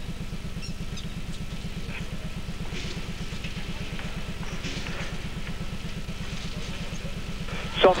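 Steady low electrical hum with a fast, even buzz, the noise of an old VHS television recording, under faint arena sound.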